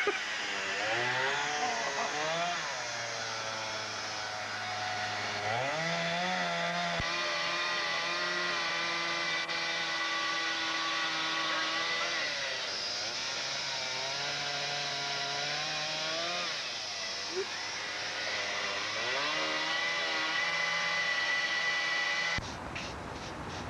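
Two-stroke gas chainsaw running, its engine speed dropping to a low idle and rising to higher revs several times.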